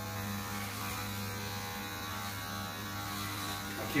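Electric hair clippers with a number two guard running with a steady, even hum while cutting hair.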